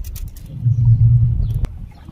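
A low rumble that swells for about a second in the middle, then a single sharp click.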